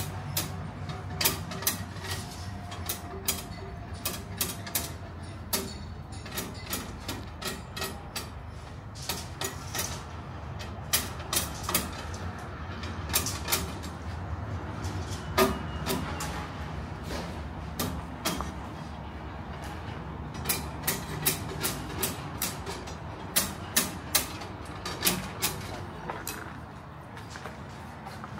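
Building-site work: sharp knocks and clinks of hand tools on brick, concrete or scaffolding, coming irregularly and often several a second, over a steady low machine hum.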